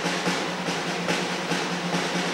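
School band drums playing a steady beat, about two or three strokes a second, over a steady low hum.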